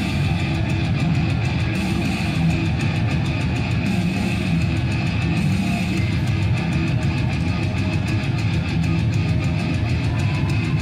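Thrash metal with distorted electric guitar and bass playing steadily, the intro of a live set.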